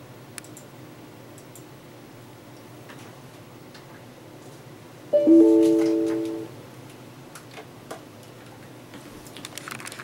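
Light scattered clicking over a low steady hum. About five seconds in, a short chime of several notes sounding together rings out and fades within about a second and a half, followed by more clicks that grow busier near the end.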